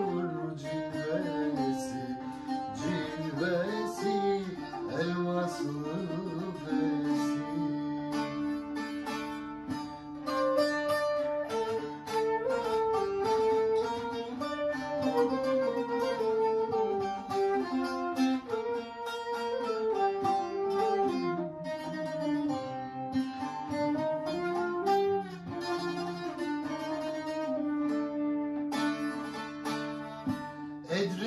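Instrumental interlude of a Turkish folk song: a bağlama (long-necked saz) picked rapidly and a transverse flute carrying the melody together.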